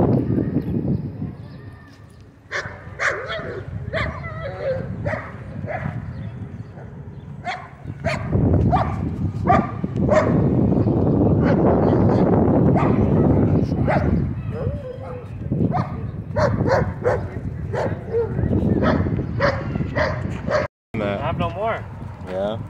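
Dogs barking in short repeated calls, with voices talking in the background. A stretch of loud rushing noise runs through the middle.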